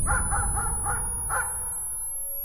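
A thin, high-pitched ringing tone held steady, with about five short harsh caws in the first second and a half.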